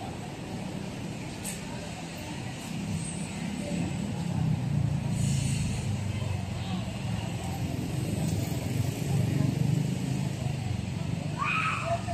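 Steady low rumble of city road traffic, swelling for several seconds in the middle as vehicles pass, with people's voices in the background.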